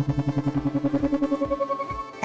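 Synthesized speaker-test sound for the right speaker: a fast stuttering tone, about a dozen pulses a second, with higher octaves joining one after another.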